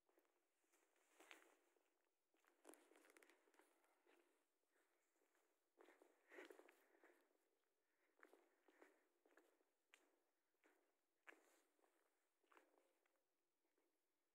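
Faint footsteps crunching in snow, an uneven pace of short crunches about one or two a second.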